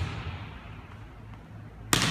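A volleyball striking once with a sharp smack near the end, echoing through a large gymnasium, while the echo of an impact just before dies away at the start. A low steady hum sits underneath.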